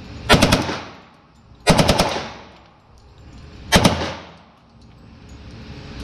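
Automatic firearm fired on full auto in three short bursts of a few rapid rounds each: about a second in, about two seconds in, and just before four seconds. Each burst rings out and fades in the enclosed range.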